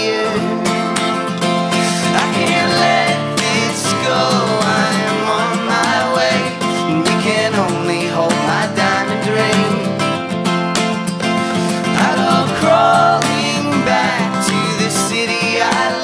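Live acoustic folk-rock music: a steadily strummed acoustic guitar with several voices singing in harmony, without clear words.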